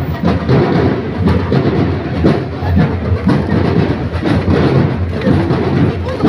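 Parade marching drums beating a steady rhythm of low drum hits.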